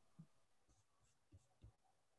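Near silence: room tone on a video-call recording.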